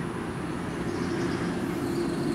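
A steady low mechanical hum from a running motor, with a faint high whine coming in about halfway through.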